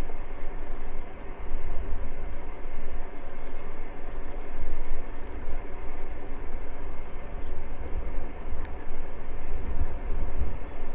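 Wind buffeting the microphone of a camera on a moving bicycle, an uneven low rumble that rises and falls, over a steady hiss of tyres rolling on an asphalt cycle path.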